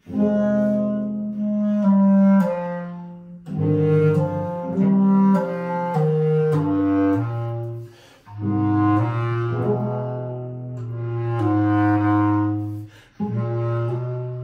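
Bass clarinet and cello playing a duet of held notes that move in steps, in phrases broken by short pauses about three and a half, eight and thirteen seconds in.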